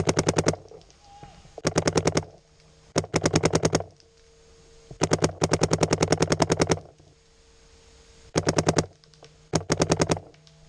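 Paintball marker firing rapid strings of shots, about a dozen a second. It fires six bursts, lasting from half a second to nearly two seconds, with the longest string in the middle.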